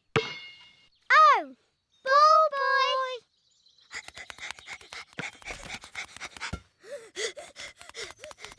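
Cartoon sound effect of a racket hitting a ball, a sharp hit with a short ringing tone, at the very start. A child's voice cries 'Oh!' about a second in and a second drawn-out cry follows. From about four seconds comes rapid, breathy cartoon panting of a small character running, with short voiced huffs after about seven seconds.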